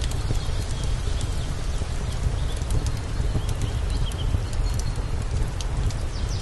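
Steady low wind rumble on the microphone, with birds chirping now and then and scattered sharp crackles from a freshly lit wood fire in an outdoor fireplace.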